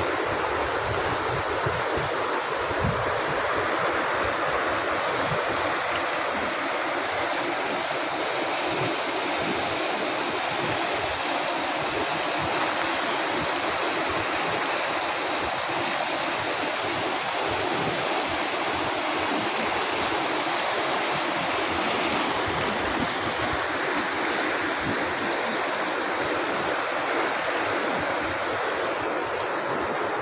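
Kunhar River rapids rushing over boulders: a steady, unbroken sound of white water.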